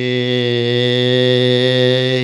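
A Thai monk's voice through a microphone, holding one long sung note in the melodic lae style of an Isan sermon.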